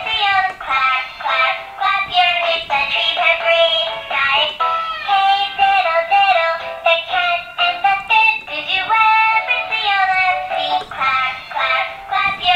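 An electronic children's song with a high synthetic singing voice plays from the small built-in speaker of a toy ATM money-bank car. The sound is continuous and tinny, with little bass.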